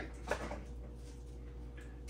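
A brief click as a power plug is pushed into a wall outlet, then a faint steady low hum.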